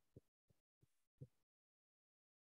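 Near silence, broken by about five faint, dull low thumps in the first second and a half.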